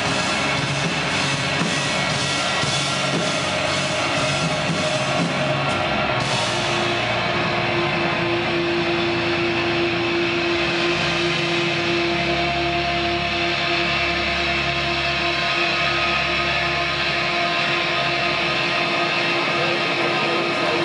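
Post-rock band playing live and loud: a dense wall of guitars with drums that thins about six seconds in and settles into long sustained tones, the deep bass dropping away near the end as the song closes.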